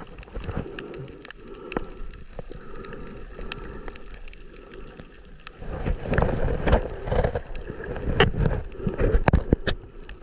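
Water heard through a submerged camera at the surface: a muffled wash with scattered sharp clicks. From about halfway through it turns to louder, choppier splashing and sloshing that stops just before the end.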